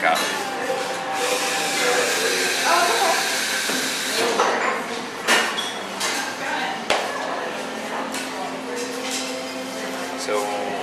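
Glass siphon coffee brewer over its heater, hissing as vapour from the lower chamber holds the brewing coffee in the upper chamber; the hiss fades after about four seconds. Then several sharp glass clinks as the brewer is handled, with voices in the background.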